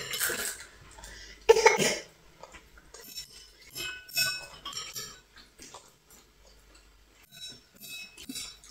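Spoons and chopsticks clinking against ceramic bowls and plates while eating, with a few short ringing clinks. A brief louder burst comes about one and a half seconds in.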